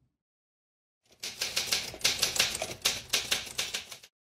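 Silence for about a second, then a manual typewriter typing: rapid key strikes, several a second, running on to the end.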